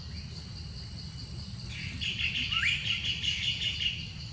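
A bird's rapid trilling call comes in a little before halfway and runs to the end, with one short rising note in it, over a steady, evenly pulsing high insect chirp.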